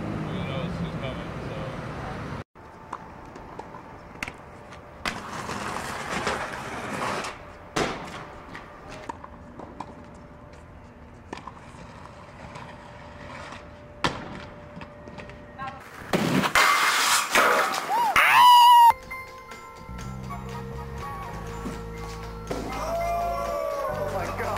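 Aggressive inline skates on concrete: wheels rolling, with scattered sharp clacks of grinds and landings. About two-thirds of the way in comes a loud stretch of skate noise with voices yelling. A man's voice is heard at the start, and steady low tones with voices run near the end.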